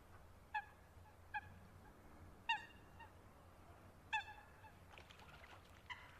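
Common mergansers calling: five short, honk-like calls, each a brief slightly falling note, spaced about a second apart, the loudest about halfway through.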